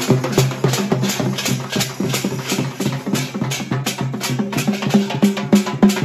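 Fast devotional festival music driven by rapid drum and percussion strokes, about four or five a second, over a steady low held note.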